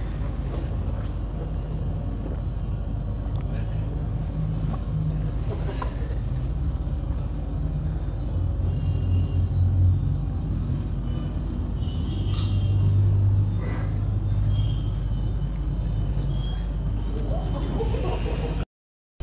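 Mixed street traffic of buses, cars, motorcycles and auto-rickshaws, played back over a lecture hall's loudspeakers: a steady engine rumble that swells twice, around the middle and again a few seconds later.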